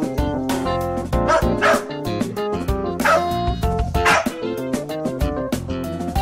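Small dogs yipping and barking about four times over background music.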